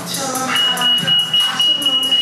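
A shop's anti-theft security gate alarm sounding one steady, high-pitched beep that starts about half a second in, set off by the shoulder bag carried through the gates.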